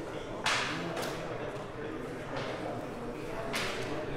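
Carom billiard balls rolling after a three-cushion shot, with a sharp click about half a second in and fainter knocks near the middle and just before the end as they strike each other and the cushions.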